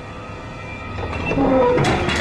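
A steady low rumble with metallic squeals and clanks building about a second in.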